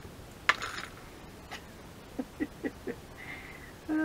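A single sharp tap about half a second in as things are handled on a craft table, then a soft four-beat chuckle a couple of seconds later.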